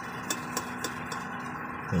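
Steady low mechanical hum of a running machine in the workshop, with a few faint light metallic ticks in the first second or so as a feeler-gauge blade is worked into a piston ring's end gap inside a cylinder liner.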